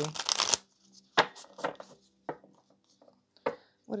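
A new deck of 52 oracle cards shuffled by hand: a half-second burst of riffling right at the start, then a handful of short, separate card snaps over the next few seconds.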